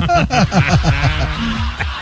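Laughter in quick, even 'ha-ha' bursts, giving way about half a second in to a short musical sound with held notes, the kind of laugh and music effect played on a radio show.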